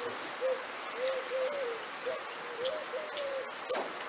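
A dove cooing outdoors: a run of short, soft, low notes, some bending up and down in pitch. There are a few faint sharp clicks, one near the end.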